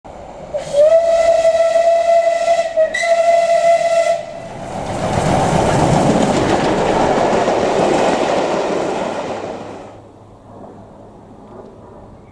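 Steam locomotive whistle blown twice, a long blast and then a shorter one on the same steady pitch, followed by a loud rushing hiss that swells and then fades away.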